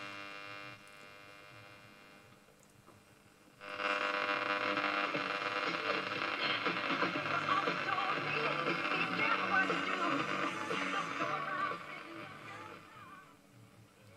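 A 1939 Rolax five-valve AM broadcast-band valve radio being tuned by hand. At first there is a faint, fading buzz of electrical interference, which may come from computer gear on the same mains circuit. About three and a half seconds in, a station suddenly comes in playing music through the set's speaker, and it fades away near the end.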